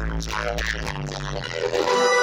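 Dub music played loud through a large festival sound system: a heavy held sub-bass line under a pitched melody. The bass drops out briefly near the end.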